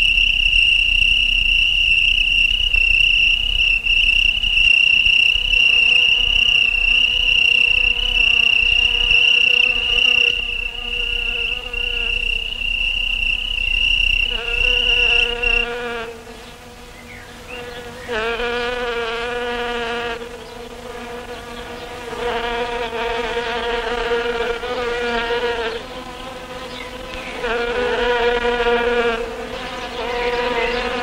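Insects buzzing: a steady high-pitched drone that cuts off suddenly about halfway through, followed by repeated buzzing bouts of about two seconds each at a lower, wavering pitch.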